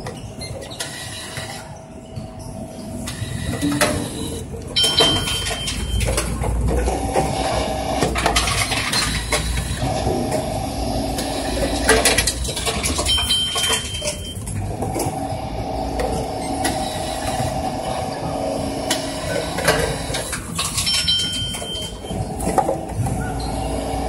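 Reverse vending machine taking in plastic bottles one at a time: a short beep, then the intake mechanism runs with a steady whirring hum for a few seconds, with knocks and clatter as each bottle is pushed in and drawn through. The beep comes three times, about eight seconds apart.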